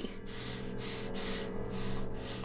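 Quick, heavy breaths, about two a second, over a steady low hum.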